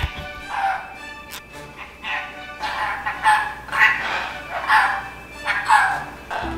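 A red-lored Amazon hybrid parrot chattering in a string of short babbling calls, like mumbled speech, over background music.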